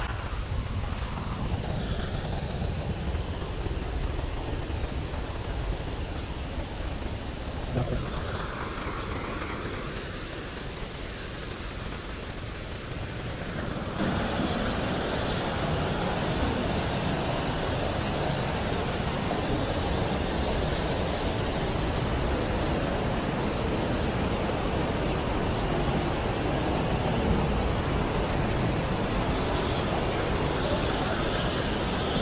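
River water pouring over a weir and rushing across rocks: a steady rush of whitewater that becomes suddenly much louder and fuller about halfway through, after a quieter low rumble.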